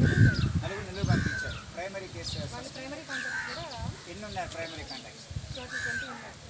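Crows cawing several times, short harsh calls a second or two apart, with people talking faintly in the background.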